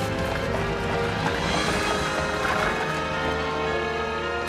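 Background music over a horse's hooves clip-clopping as it pulls a carriage.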